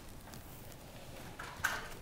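Faint handling noise from gloved hands tightening the lower head straps of a non-invasive ventilation face mask, with one brief, sharper rustle about one and a half seconds in.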